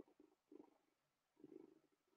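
A domestic cat making faint, low sounds close to the microphone, in three short bursts.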